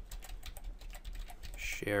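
Computer keyboard typing: a quick run of keystroke clicks.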